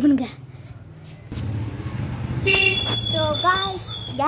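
A vehicle horn sounds steadily for about a second and a half, over the low rumble of passing traffic.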